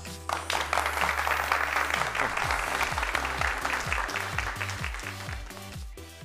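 Applause over upbeat closing theme music, the clapping thinning out toward the end while the music's bass line carries on.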